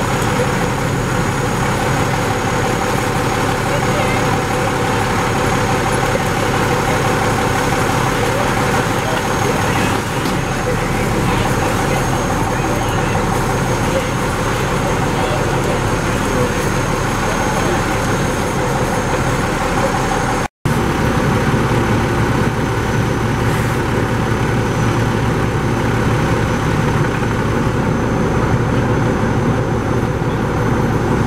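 Steady drone of a fire engine's diesel engine and pump running to supply the hose lines, with indistinct voices over it. The sound drops out for an instant about two-thirds of the way through.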